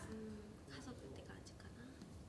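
Faint, quiet women's voices, close to a whisper, in a lull of the conversation.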